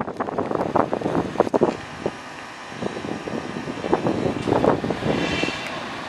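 Construction-site machinery noise: irregular metallic clanks and knocks, in a cluster in the first two seconds and again around four to five seconds, with wind rumbling on the microphone. A short high-pitched squeal comes about five seconds in.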